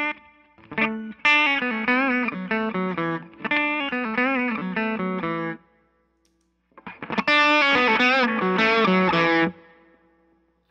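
Electric guitar, a Gibson, played through an amp in two phrases with bent notes. The first phrase is played with the Telos overdrive's drive channel off. After a pause of about a second, the second phrase is louder and more sustained, with the Psionic Audio Telos drive switched on at a turned-down gain setting.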